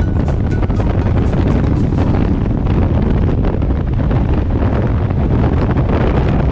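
Freefall wind rushing over the camera flyer's microphone during a tandem skydive: a loud, steady roar with no let-up.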